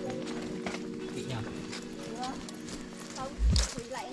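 Background music with steady held notes over footsteps on a dirt path, about two steps a second, with brief snatches of voice. A low thump about three and a half seconds in is the loudest moment.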